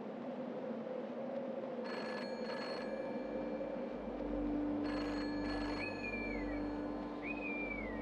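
Telephone bell ringing in the British double-ring pattern: two pairs of short rings, about three seconds apart. Two short whistled calls, each rising then falling, follow near the end over a faint steady hum.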